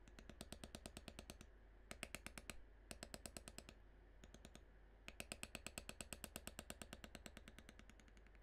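Rapid light mallet taps on a steel leather beveler being walked along a carved line in tooling leather, about ten strikes a second. The taps come in several runs with short pauses between them.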